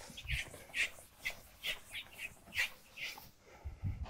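A chalkboard eraser rubbed back and forth across a blackboard in quick strokes, about two or three rasping wipes a second, stopping about three seconds in. A low thump comes near the end.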